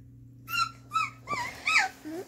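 Young puppies whimpering: four short high-pitched whines about half a second apart, the last one sliding down in pitch.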